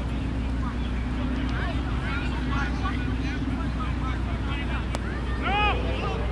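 Open-air ambience of a park cricket field: a steady low rumble of street traffic, with a low hum through the first half and faint, scattered distant voices. About five and a half seconds in, one short call from a player rises and falls in pitch.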